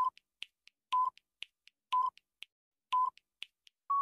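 Quiz countdown-timer sound effect: a short electronic beep once a second with faint clock-like ticks between the beeps, ending near the end in a longer, slightly higher beep as the time runs out.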